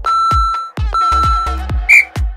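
Interval timer's countdown beeps over background house music with a steady beat: two long beeps at the same pitch, then a short, higher, louder beep near the end that marks the timer running out.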